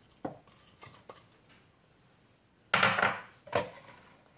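Kitchen utensils clinking and knocking against a glass mixing bowl: a few light clicks, then a louder clatter and a knock near the end.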